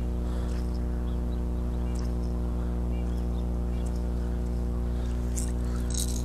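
A steady low hum with a stack of overtones, unchanging in pitch, with a few faint clicks.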